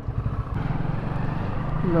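Hero 100cc single-cylinder motorcycle engine running as the bike rides off, its low, evenly pulsing sound getting louder about half a second in.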